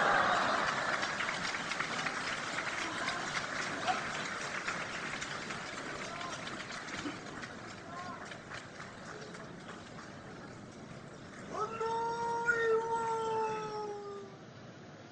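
Sumo arena crowd cheering and applauding as a bout ends, loudest at first and fading away over several seconds. Near the end, a single long sung call held on one pitch, the drawn-out chant of a yobidashi calling a wrestler's name.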